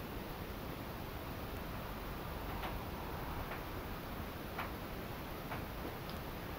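Four soft taps, about a second apart, over steady room hiss.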